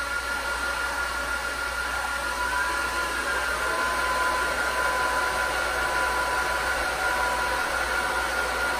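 Cooling fans of a Mellanox SN2010 switch and a Supermicro SYS-2029BT-HNR 2U four-node server running with a steady rushing noise. About two and a half seconds in, a fan whine rises in pitch and a second steady tone joins as a just-powered-on server node spins up its fans.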